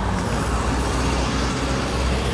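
Steady road traffic noise from cars and trucks running through a city junction, heavy in low rumble.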